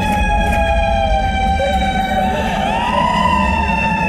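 A siren-like wailing tone with several overtones, from the horror soundtrack. It swells up and then slowly sinks, and it repeats about two and a half seconds later, over a steady low rumble.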